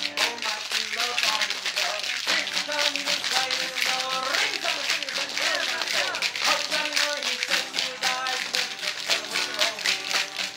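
Acoustic guitar strumming a tune while a group of spoons, played by hand, clack along in a quick, steady rhythm.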